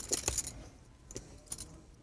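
Poker chips clicking together as a player handles his chip stack: a quick cluster of sharp clicks at the start, then a few scattered clicks.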